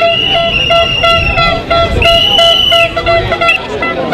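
Repeated horn toots: a steady pitched note sounded again and again, each blast under a second long, over crowd and wind rumble.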